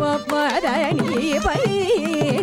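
Carnatic vocal singing, the voice sliding and oscillating around its notes in gamakas, accompanied by violin and mridangam, with a deep mridangam stroke about one and a half seconds in.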